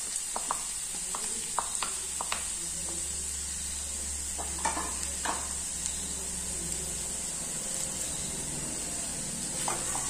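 Potato matchsticks, onion and green chilli frying in oil in a non-stick kadai, a steady soft sizzle, with a few light clicks of the wooden spatula and utensils against the pan in the first couple of seconds and again around the middle.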